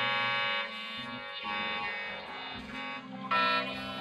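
Improvised instrumental music: an electric guitar run through effects holds sustained, buzzy tones. The notes change a few times, and a louder, brighter note comes in about three and a half seconds in.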